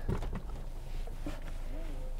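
Faint knocks and rustles of a driver moving about in a car seat, over a low steady hum inside the car.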